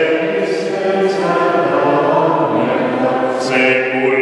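Unaccompanied hymn singing: slow, long-held sung notes carried in the reverberant space of a large church.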